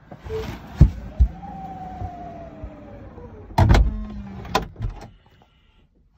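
A Tesla Model X's powered door closing: a couple of knocks, then an electric motor whine that rises and slowly falls, a heavy thump as the door shuts about three and a half seconds in, and a short lower whir with a few clicks after it.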